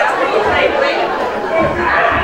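Indistinct talking: several voices chattering over one another, with no clear words.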